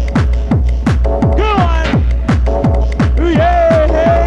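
Trance dance track from a live DJ set: a steady four-on-the-floor kick drum a little over twice a second and a deep bass under it, with synth chords and a synth lead that bends and slides down in pitch.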